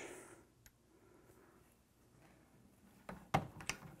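Hands working a single-stage reloading press: faint handling, then a short cluster of sharp clicks and knocks a little after three seconds in as the cartridge is handled at the ram and shell holder.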